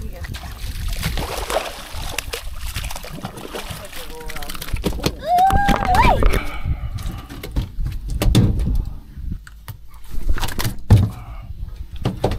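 Hooked redfish splashing at the water's surface, then a series of sharp knocks and thumps as it flops on the boat deck.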